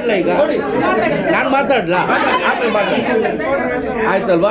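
Speech: people talking, with several voices overlapping, in a large room.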